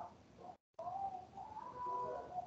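Faint bird calls: a few short pitched calls that glide and then hold a steady note, with the audio cutting out completely for a moment about half a second in.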